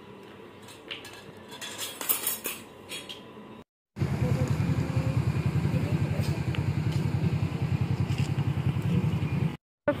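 Plates, spoons and cups clinking at a meal for the first few seconds. After a short silent break comes a steady, louder, low pulsing hum, which stops at another brief break near the end.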